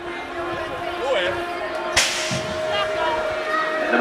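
A BMX start gate drops with a single sharp crack about two seconds in, setting the heat of riders off down the start ramp.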